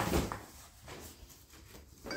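A cardboard box set down on a wooden table: a short knock at the start, then faint handling of the box.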